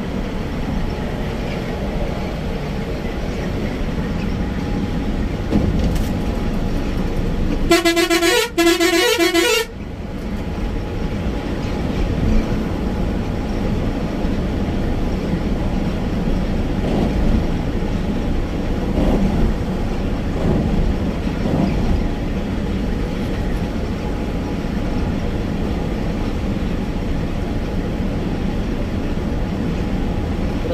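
Volvo coach driving at highway speed, its engine and road noise heard steadily from the driver's cab. About eight seconds in, the bus's horn sounds two loud blasts back to back, together lasting about two seconds.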